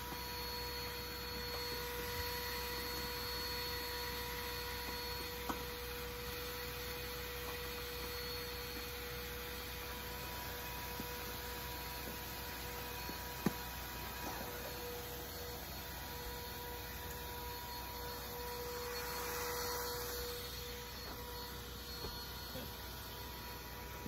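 Vacuum cleaner running steadily as its nozzle works the van's floor, a steady hum with a couple of small knocks about five and thirteen seconds in.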